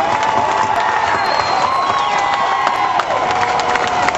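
Crowd cheering and clapping, with long drawn-out shouts and high screams held above the applause.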